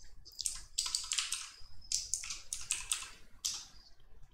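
Typing on a computer keyboard: an irregular run of keystroke clicks, a few per second, with short gaps between groups.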